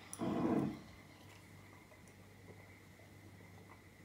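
A child sniffing once, briefly, at a glass of drink held under the nose, followed by near silence.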